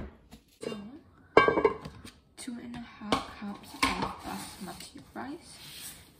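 Kitchen clatter of a plastic food container and its lid being handled against a metal rice-cooker pot, with several sharp knocks, the loudest about one and a half seconds in. Dry brown rice rustles as it is scooped out of the container in the second half.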